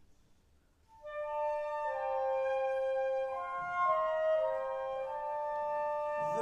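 Woodwinds of a wind band, a flute among them, playing a slow melody in sustained notes in harmony, entering about a second in after a moment of near silence.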